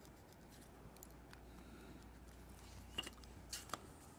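Quiet room with a few faint taps and clicks, the clearest about three seconds in and just before the end, as a stainless steel ruler and pen are handled and the ruler is laid down on a sheet of paper.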